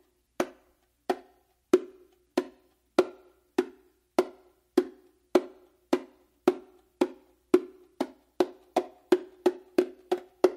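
Slaps on the small head (macho) of a Meinl bongo, played with one hand laid on top of the other as a slap-building exercise. The strokes come evenly, about one every 0.6 s, each a sharp crack with a short ringing pitch, and come faster near the end.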